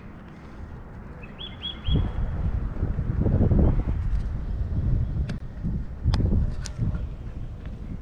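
Wind rumbling on the microphone in gusts, loudest in the middle. A small bird gives a quick run of four or five high chirps about one and a half seconds in, and a few faint clicks follow later.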